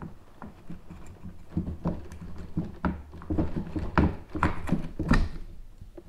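Round rudder housing cover knocking and scraping against the kayak hull as it is lined up and worked into its recess: a run of irregular knocks and clicks, the loudest about four and five seconds in.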